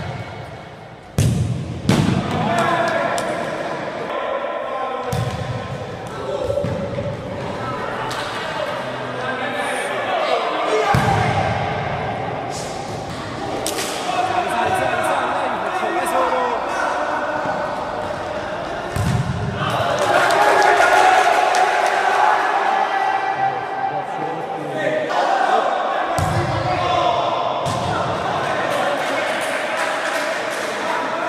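Futsal ball being kicked and bouncing on a hard gym floor, a sharp thud every few seconds, under continual shouting and calling voices from the game, all sounding in a large indoor hall.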